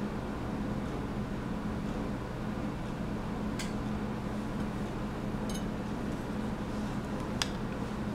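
A steady low hum of room noise, with three small clicks as a metal lipstick tube is twisted down and handled. The sharpest click comes near the end.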